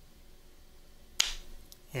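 Quiet room tone, then about a second in a man's single sharp mouth click and a short, breathy intake of air just before he speaks.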